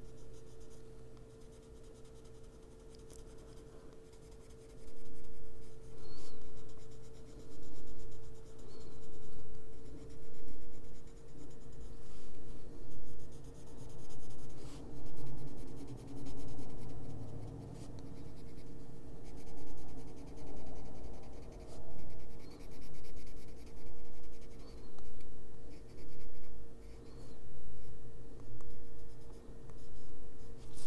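Colored pencil scratching back and forth on paper as it shades. Soft at first, then from about five seconds in the strokes come in regular swells roughly once a second.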